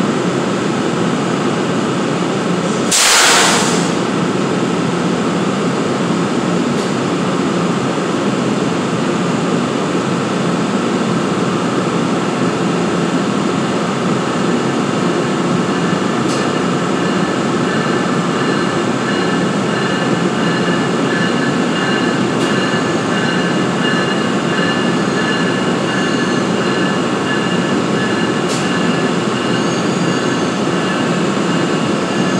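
NJ Transit ALP-46A electric locomotive standing at the platform, its onboard blowers and equipment running with a steady drone and a high whine. A short, loud hiss of released compressed air comes about three seconds in, and a few faint clicks follow later.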